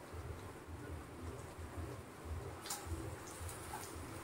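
Faint cooking sounds from a kadai of chicken roasting on the stove, with a low uneven rumble and a light hiss. Near the end, a wooden spatula clicks and scrapes against the pan as it is stirred.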